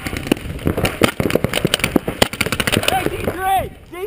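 Paintball markers firing across the field: a dense, irregular rattle of sharp pops, many shots a second. A shouted call cuts in near the end.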